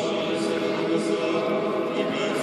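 Choir singing a liturgical chant, the voices held on long, steady notes with a few sung consonants.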